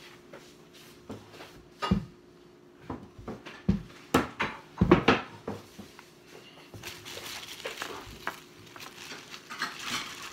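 A few separate knocks and thumps on a table, the loudest about five seconds in, then the crinkling of a clear plastic zip-top bag being handled near the end.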